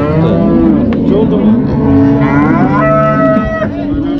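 Cattle mooing: long, overlapping low calls, with a higher-pitched call late on that ends shortly before the close.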